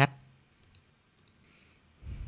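A few faint computer mouse clicks in near silence.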